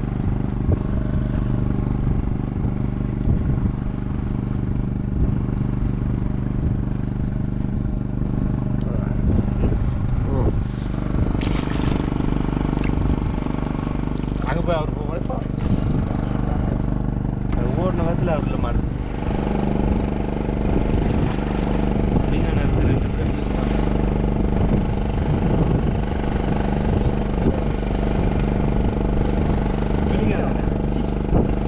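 A small engine on a fishing boat running steadily throughout, its note changing slightly a little past the middle, with voices talking over it for a while in the middle.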